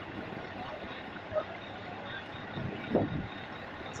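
Steady outdoor background noise with faint, brief voices about a second and a half and three seconds in.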